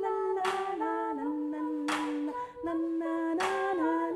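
Two women's voices humming long held notes in close harmony, the chord shifting every second or so. A soft swishing percussion stroke comes about every one and a half seconds.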